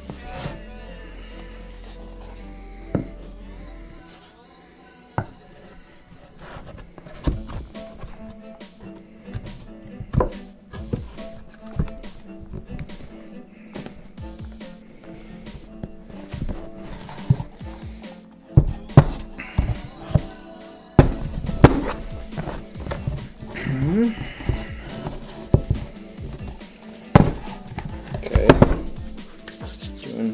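Background music plays over knocks and taps from wooden parts being handled on a table: a glued plywood top is set onto the body and pressed down. A few sharp thunks in the second half are the loudest sounds.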